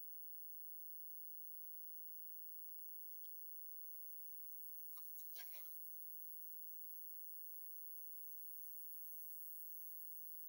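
Near silence: faint room tone with a thin steady high tone and a light hiss, broken by a brief faint sound about five seconds in.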